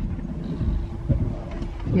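Low rumble and a steady hum inside a horse lorry's cab, with a few dull thumps.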